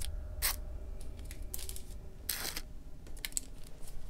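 Paper wrapper of an adhesive bandage being torn and peeled open: a series of short crinkling rips and clicks, the longest a little past halfway, over a low steady hum.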